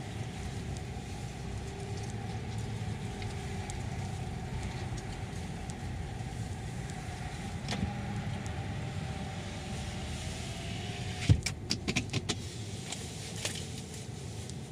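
Inside a car's cabin as it creeps forward at low speed: a steady low engine and road hum, with a faint wavering whine from about eight seconds in. About eleven seconds in comes a quick run of sharp clicks and knocks.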